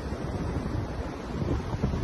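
Ocean surf breaking on a beach, a steady rush of noise, with wind rumbling on the microphone.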